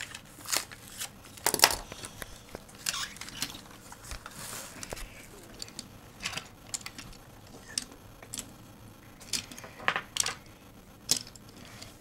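Hot Wheels blister-card package being opened by hand: irregular crinkling and tearing of plastic and cardboard, with scattered sharp clicks and small clinks of die-cast toy cars.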